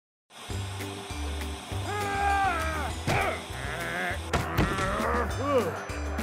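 Upbeat cartoon music with a steady bass beat, starting about half a second in after a brief silence. Wordless cartoon-character voices sliding up and down in pitch come in over it several times from about two seconds in.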